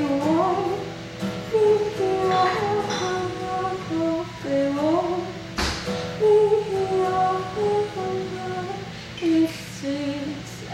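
A woman singing with her own acoustic guitar accompaniment, the voice holding and sliding between long notes over steady strummed chords. A single short knock sounds about halfway through.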